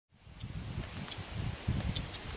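Outdoor wind buffeting the microphone in gusty low rumbles under a light rustle of marsh grass, fading in just after the start, with a couple of faint high chirps.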